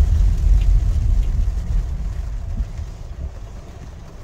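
Low rumble inside a moving car's cabin on a rain-soaked road, fading away over the last two seconds.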